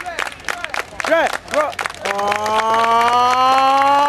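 Spectators clapping in a steady rhythm, with short vocal calls. About two seconds in, a long held note begins and slowly rises in pitch, carrying on over the clapping.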